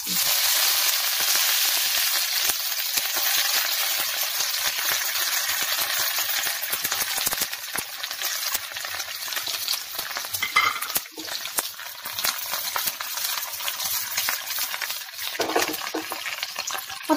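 Hot oil sizzling and crackling as sliced shallots, dried red chillies and curry leaves hit a pan of mustard seeds: the tempering for a pulissery. It starts suddenly, loudest at first, then settles to a steady crackling sizzle.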